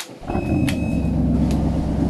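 Motor yacht's diesel engines running inside the wheelhouse, a steady low drone that comes in abruptly. A high beep lasting about a second sounds as the drone begins, with a sharp click partway through it.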